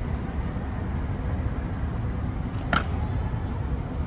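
A sharp clack of an Evzone guard's heavy ceremonial shoe striking the marble pavement, a little after halfway, with a softer tap just before it, over a low steady rumble.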